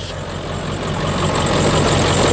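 Ford F-350's 7.3 L Powerstroke turbo-diesel V8 idling steadily.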